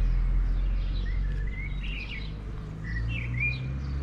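Small songbirds chirping, with a couple of short rising whistled phrases in the middle, over a steady low rumble.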